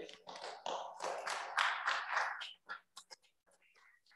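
Faint, indistinct off-microphone voices in the meeting room. The sound cuts to silence about three seconds in.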